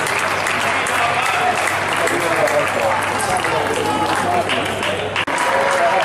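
Steady crowd chatter in a big table tennis hall, with many sharp clicks of celluloid balls striking bats and tables across the hall. The sound cuts out for an instant near the end.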